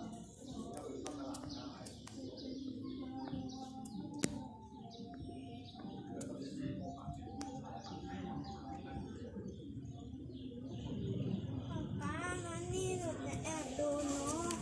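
Small birds chirping in quick repeated runs, with low cooing of pigeons underneath.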